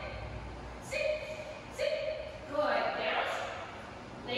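A high-pitched voice making short, drawn-out sounds, with a longer, breathier one about three seconds in. No words can be made out.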